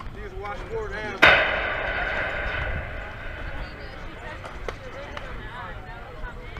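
Softball bat striking the pitched ball about a second in: a sharp ping that rings on and fades over a couple of seconds. Faint voices run underneath.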